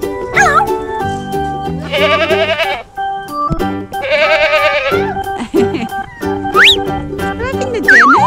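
Upbeat children's background music with a steady beat, with two wavering goat bleats over it, each about a second long, about two and four seconds in. A quick rising whistle-like glide follows near the end.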